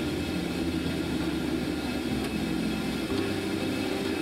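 Steady low roar and hum of a commercial kitchen's gas range burning under a stockpot, with the kitchen's ventilation running; no sharp sounds stand out.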